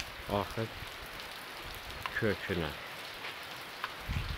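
Steady rain falling, an even hiss with no break.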